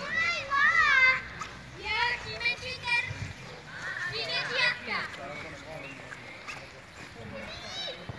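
Children's high-pitched voices shouting and calling out while they play, in several short bursts with lulls between them.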